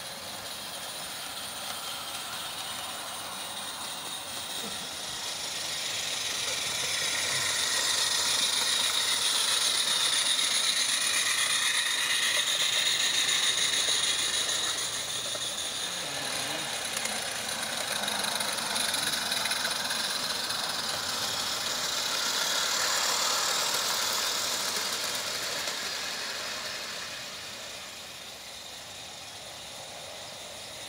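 Garden-railway model trains running along the track: a rattle of small wheels and wagons that builds as a train comes near, dips, swells again with a second pass and fades near the end.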